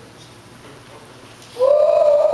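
A pause with low room noise. About a second and a half in, a person's voice starts one long, held vocal cry that rises slightly in pitch.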